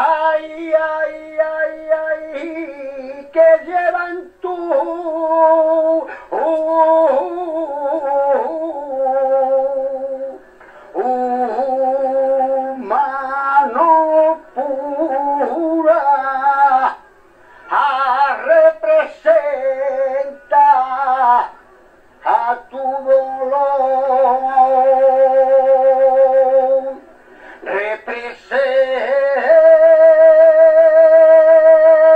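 A saeta: one male voice singing an unaccompanied, heavily ornamented flamenco lament in long, drawn-out phrases, with several short breaks for breath.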